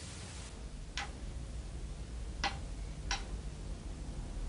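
Chess pieces set down on a board: three short, sharp clicks, one about a second in and two more near the end, over a low steady room hum.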